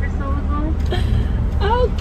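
Brief bits of speech over the steady low hum of a car idling, heard from inside the cabin.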